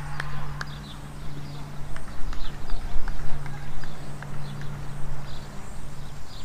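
Outdoor ambience with wind rumbling on the microphone and a steady low hum. Scattered sharp clicks and short high chirps come over it.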